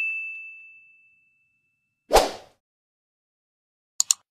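Video-graphic sound effects: a bright, bell-like ding that fades out over the first second, then a short burst of noise about two seconds in.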